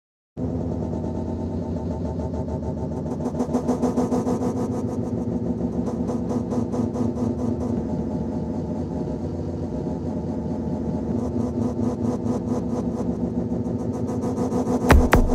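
Electronic music intro: a dense, distorted synth bass drone with a fast pulsing, engine-like texture, starting abruptly about half a second in and holding steady.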